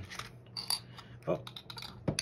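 Light clicks and taps from handling an opened metal Poké Ball tin and the plastic-wrapped booster packs inside it, with a brief crinkle just under a second in.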